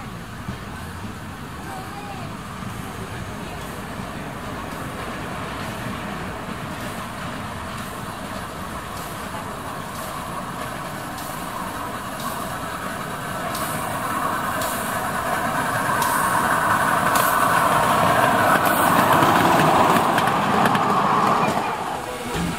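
Miniature ride-on railway train approaching along its track, its running noise growing steadily louder and loudest in the last few seconds, with a few sharp clicks as it draws near.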